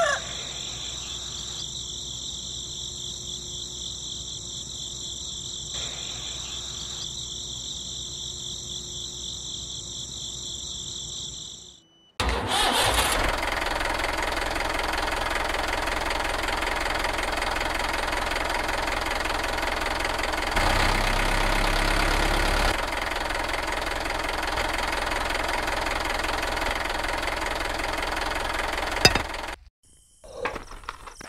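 For about the first twelve seconds, a steady high-pitched insect chirring. After a short break, a louder steady engine-like running sound carries on until near the end, swelling briefly with a deeper rumble a little past the middle.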